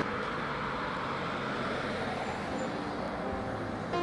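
Steady road-traffic noise of a car driving along a street, a smooth even hiss of tyres and engine.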